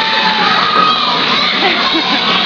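A group of children shouting and cheering, many voices at once, with one long held shout that ends about half a second in.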